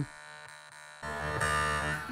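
Yakut khomus (jaw harp) played into a microphone. It comes in about a second in as a steady low note with many overtones above it.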